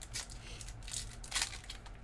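Foil trading-card pack wrapper crinkling as the pack is handled and its cards taken out, in a few short rustles, the loudest about one and a half seconds in.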